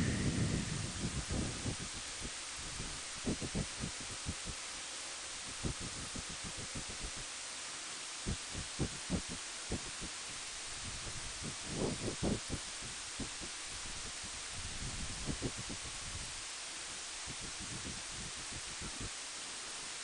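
Wind buffeting the microphone of a motorcycle-mounted camera while riding slowly: a steady hiss broken by irregular low thumps and rumbles.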